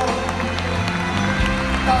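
Live band playing a slow ballad with sustained chords over a steady bass, between sung lines; the singer's voice comes back in near the end.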